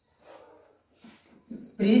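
Felt-tip marker writing on a whiteboard: a high squeak at the first stroke, soft scratching, then another squeak about a second and a half in. A man's voice begins just at the end.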